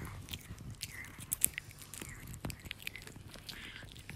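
Chihuahua gnawing a hard striped chew stick: irregular wet clicks and crunches of teeth on the chew, with one sharper click a little over a second in.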